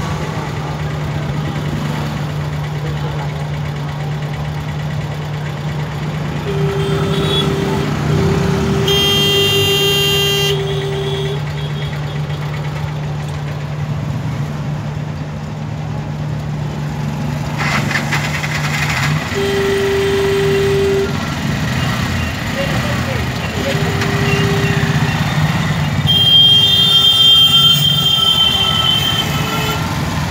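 Street traffic in a jam: a nearby engine idling with a steady hum that stops a little past halfway, while vehicle horns honk again and again. One long, loud horn blast comes about a third of the way in, and another near the end.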